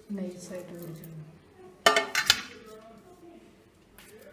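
Steel cookware clanking: two sharp metallic knocks about two seconds in, close together, among pots holding roasted whole spices. A person's voice talks softly before and after the knocks.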